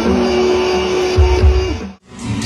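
Live band music over a concert sound system, with a long held note over drums and bass, fading out quickly just before the end.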